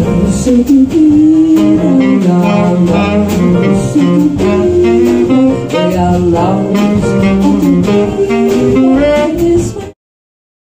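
A live jazz combo plays: tenor saxophone and a sung voice over piano, double bass and drums, with frequent cymbal strokes. The music cuts off suddenly just before the end.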